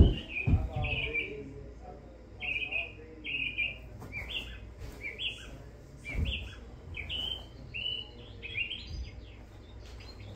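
A sharp smack right at the start as a struck golf ball hits the simulator screen, then birds chirping in short, high, falling calls repeating every half second or so. A dull thud comes about six seconds in as a golf ball is dropped onto the hitting mat.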